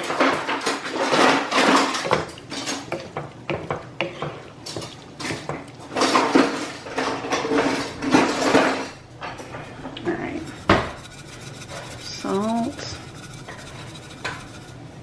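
Wooden spoon stirring and scraping a thick, wet squash casserole mixture around a cast-iron skillet, in repeated scraping strokes for the first nine seconds or so. A single sharp knock comes a little after ten seconds in.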